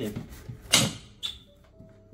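A knife cutting into a whole watermelon: one loud, short, sharp crack about three-quarters of a second in, then a smaller click a half-second later.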